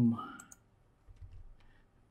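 Two quick, sharp computer clicks about half a second in, just after the end of a spoken word, followed by a faint low rumble.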